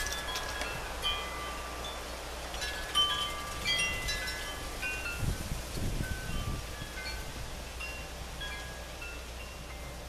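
Chimes ringing: scattered clear notes of different pitches, some overlapping, sounding at irregular moments, with a soft low rumble around the middle.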